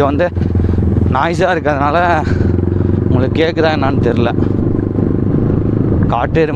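Yamaha R15 V4 motorcycle's 155 cc single-cylinder engine running steadily under way, its hum unbroken.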